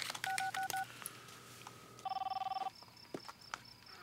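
Cellular phone keypad beeping three times in quick succession, then a steady tone. About two seconds in, a mobile phone's electronic ringer gives one rapid warbling trill.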